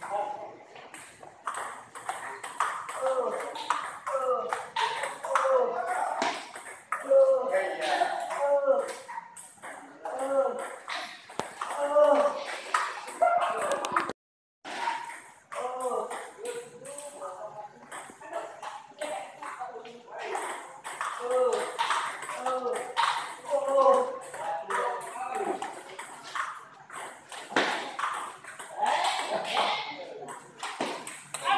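Table tennis balls clicking off paddles and tables, with several games being played at once, over background chatter from the players. The sound drops out briefly about halfway through.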